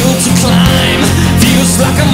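Late-1980s hard rock song playing loud and steady, with a full band of electric guitars, bass and drums.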